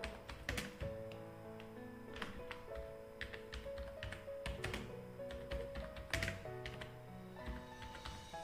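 Computer keyboard keys tapped in an irregular run of keystrokes, over faint background music of held notes.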